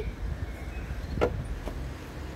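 Steady low rumble of a car engine idling, with two short knocks a little over a second in.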